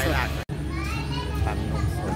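Voices: a woman finishes a word, then after a sudden cut come high-pitched children's voices over a steady low rumble of street noise.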